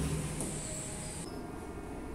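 The amplified test voice fades out in the room's echo through the speakers. A faint steady hum and hiss stays underneath, with a brief thin high whine about half a second in.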